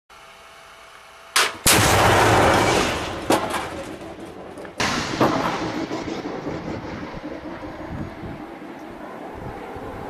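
Heavy weapons fire: two sharp bangs in quick succession, the second swelling into a loud blast that lasts about a second. Single bangs follow a couple of seconds apart, and the noise then dies away into a long rumbling echo.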